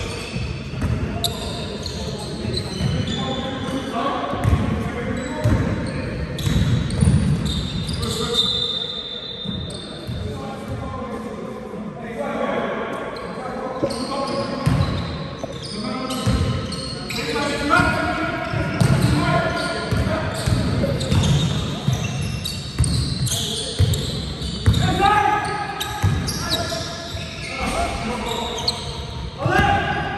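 A basketball bouncing repeatedly on a sports-hall floor during play, with players' voices calling out, all echoing in a large hall.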